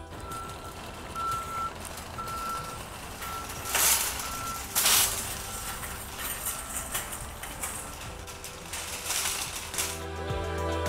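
Metal shopping cart rolling over concrete pavement. Over it, a single high electronic beep repeats about once a second, like a vehicle's reversing alarm, and fades out after about seven seconds. Two loud hisses come about a second apart near the middle.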